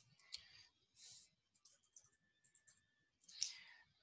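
Near silence with faint computer-keyboard keystrokes: a few scattered soft clicks as a word is typed, and a short soft hiss near the end.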